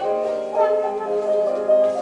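Piano music playing a melody.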